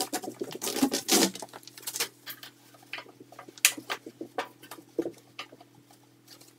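Irregular clicks, taps and scrapes as a ribbed plastic dust-collection hose is handled and fitted to a jointer's dust port, with no machine running.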